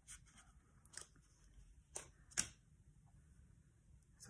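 Faint handling sounds of cardstock and baker's twine: a few soft, sharp ticks and rustles, the loudest about two and a half seconds in.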